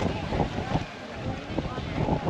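Wind buffeting the microphone, with distant voices of people swimming.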